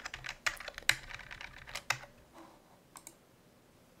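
Computer keyboard keystrokes deleting lines of code: a quick run of clicks over the first two seconds, then a single click about three seconds in.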